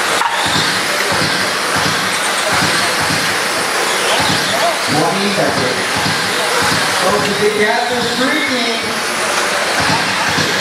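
Electric 13.5-class RC sprint cars running laps on a dirt oval, a steady mix of motor whine and tyre noise, with indistinct voices over it about halfway through and again near the end.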